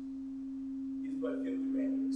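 A single steady pure tone near middle C, held without wavering and swelling slightly louder.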